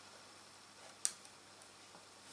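Mostly quiet, with one short, sharp click about a second in, from a felt-tip marker working on a thin plastic shampoo bottle as cutting lines are marked on it.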